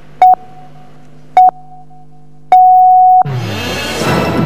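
Three loud electronic beeps at one pitch, two short then one held longer, followed by the start of a station jingle's music: the broadcast sounder that marks a programme going to a break.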